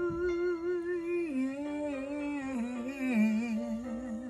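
A woman humming a slow, wordless melody with vibrato. She holds one note, then steps down through lower notes from about a second in.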